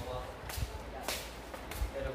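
Footsteps on a hard floor with scuffing swishes, three in about two seconds, under faint talk in the background.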